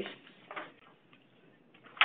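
Near quiet, with a few faint short clicks about half a second in and again near the end, and a brief louder burst right at the close.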